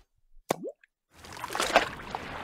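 A single short rising plop about half a second in, like a drop falling into water. After a pause, a rushing, hissing noise starts about a second in and swells toward the end.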